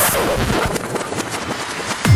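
Electronic hands-up/trance track in a short break: the steady kick drum stops after a crash, leaving a run of sharp, rapid percussive hits and swirling synth effects without a beat.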